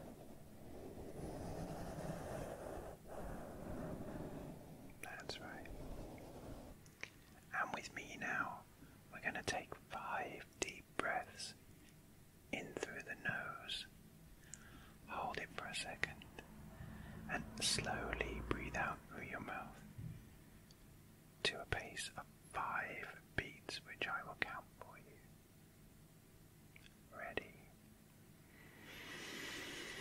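Soft brush strokes over a foam microphone windscreen for the first few seconds, then close-up whispering into the microphones with a breathy hiss near the end.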